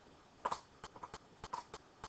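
A stylus tapping and scratching on a drawing surface while a short arc is drawn: a series of faint, irregular light clicks.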